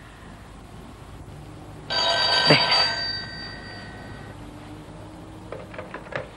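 A rotary-dial telephone's bell rings once, starting about two seconds in and dying away after a couple of seconds.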